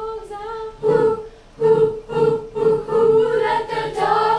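School chorus of young, mostly female voices singing together, holding long notes with brief breaks between phrases.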